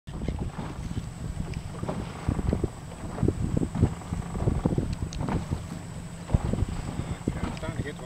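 Wind buffeting the microphone in uneven gusts over the rush of water around a small boat at sea.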